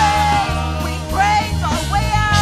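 Live worship band playing: electric bass guitar holding low sustained notes, with keyboard, drums and voices singing over it.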